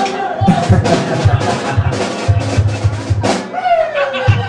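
Live rock drum kit with low bass notes playing a short, evenly paced beat of about four hits a second, ending with one bigger hit near the end.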